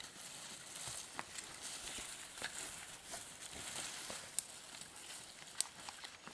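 Faint rustling and small scattered clicks of hands gathering and arranging dry twigs and kindling on forest ground, with two sharp clicks about a second apart in the second half.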